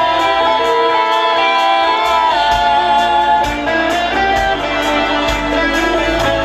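Live pop-rock band playing a song through a PA: long held melody notes over bass and a steady drum beat with regular cymbal strokes.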